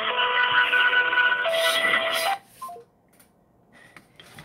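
Telephone hold music playing through a phone's loudspeaker, thin like a phone line, with long held notes. It cuts off suddenly a little past halfway, leaving near silence.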